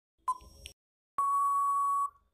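Quiz countdown-timer sound effect: the last of its once-a-second short ticks comes about a quarter second in. Just past a second in, a long, steady, loud beep follows, signalling that time is up.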